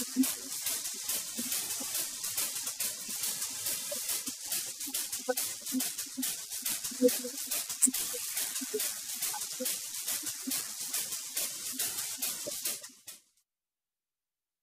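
Crackling hiss on the open commentary microphone line, with faint indistinct sounds underneath, cutting off suddenly about a second before the end.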